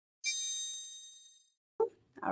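A single bright chime, a ding sound effect for a logo card, that starts a moment in and rings away over about a second. A short click follows near the end.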